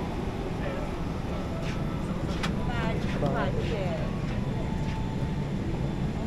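Boeing 777-300ER cabin background: a steady low rumble, with passengers' voices chattering and a sharp click about two and a half seconds in.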